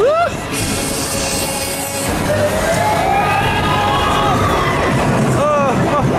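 Loud fairground ride music over the noise of a spinning ride, with riders shrieking and whooping. A long, slowly rising siren-like tone or cry runs through the middle, and short rising-and-falling cries come near the end.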